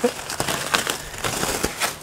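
Plastic stretch wrap crinkling and styrofoam packing crunching in irregular crackles as they are pulled and cut away by hand. A short laugh comes at the start.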